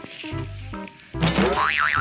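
Background music with steady repeating bass notes; a little past a second in, a louder cartoon-style sound effect enters, its pitch warbling rapidly up and down like a boing.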